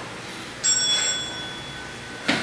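A single bright metallic bell ding, struck once about two-thirds of a second in and ringing with several clashing overtones as it fades over about a second.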